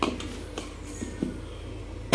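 Light taps and handling knocks from the plastic lid of an insulated food casserole being gripped and moved, over a steady low hum.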